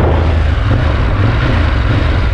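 A 2017 Ducati Monster 1200S's L-twin engine running steadily at low road speed, heard from the saddle with road and wind noise over it.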